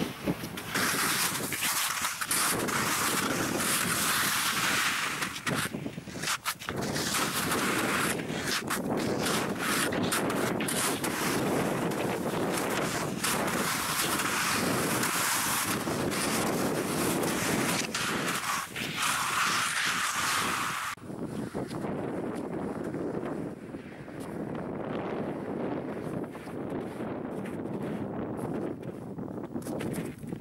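Strong wind buffeting the microphone in gusts, loud and rough for about twenty seconds, then dropping to a softer rush.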